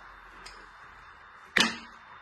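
A single short spray from a pump-spray perfume bottle: a brief hiss about one and a half seconds in.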